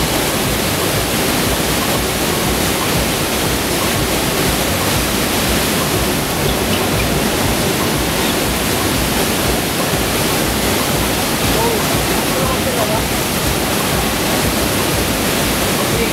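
Steady rushing of water from a FlowRider barrel wave: a thin sheet of water pumped at speed up the ride's surface and curling over into a standing barrel.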